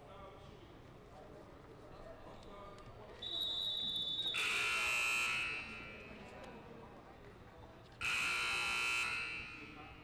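Gymnasium scoreboard buzzer sounding twice, two loud buzzes of a little over a second each, about three and a half seconds apart, the first led in by a high steady tone lasting about a second.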